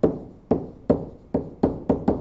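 A pen stylus tapping against a touchscreen while writing by hand: about six sharp taps spread unevenly over two seconds.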